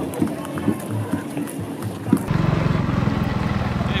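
Running footsteps of many marathon runners on the road, with scattered brief voices; about two seconds in, the sound switches abruptly to a steady low drone with a fast regular pulse.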